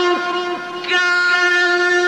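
A male qari's voice reciting the Qur'an in the drawn-out mujawwad style, holding one long note at a steady pitch, with a brief dip in loudness about half a second in.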